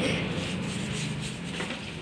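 Running tap water splashing onto a plastic toy crate while a plastic brush scrubs it: a steady, rough, even noise that slowly grows quieter.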